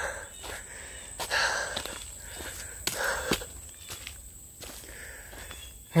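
Footsteps on dry leaf litter, twigs and loose rocks along a rough woodland path: a few uneven steps with the odd snap of a stick.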